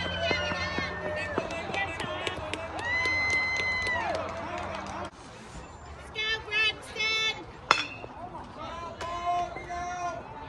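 Players and spectators shouting long, drawn-out calls across the ball field. After a cut, more shouting, then one sharp crack of a bat hitting a pitched ball about three-quarters of the way in, the loudest sound, followed by further yelling.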